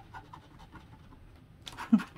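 Plastic scratcher tool scraping the coating off a lottery scratch ticket in short faint strokes, with a louder burst of scratching near the end.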